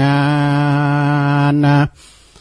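A man's voice chanting Northern Thai verse, holding one long, steady low note that breaks off just before the end.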